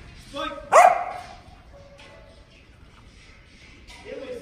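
Working kelpie giving a single sharp bark about a second in.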